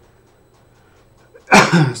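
Quiet room tone, then about one and a half seconds in a sudden, loud vocal burst from a man, of the kind of a sneeze, running straight into his speech.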